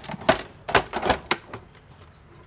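Sharp hard-plastic clicks and knocks, about five in the first second and a half, as the HP Smart Tank 515 printer's cover is handled and lifted open.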